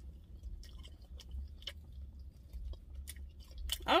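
A person chewing a bagel thin spread with cream cheese: irregular small clicks and crunches from the mouth, over a low steady rumble.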